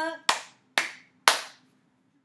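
Three sharp hand claps, about half a second apart, made with the arms stretched out in front.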